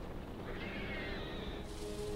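A brief high whimpering cry that rises and then falls, over a low steady rumble in the film's soundtrack.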